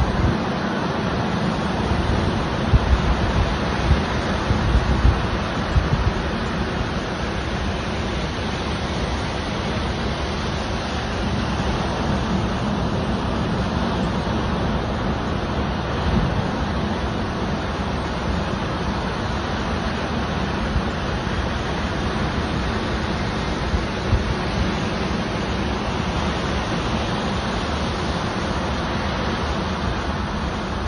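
Ocean surf breaking and washing up the beach in a steady rush, with wind buffeting the microphone in low gusts during the first few seconds.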